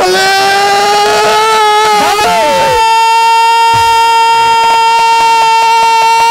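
A man's singing voice through a microphone, holding one long sustained note that steps up in pitch about two seconds in and is then held steady, in a Bangladeshi jatra pala song.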